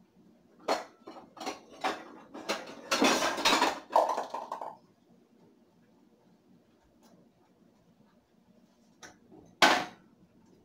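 Kitchenware clattering as pots and dishes are handled: a quick series of knocks and clinks, then a denser clatter for about two seconds, and two more knocks near the end.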